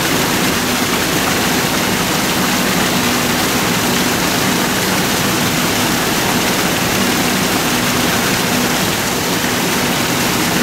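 Steady, loud rushing noise with a faint low hum underneath, unchanging throughout.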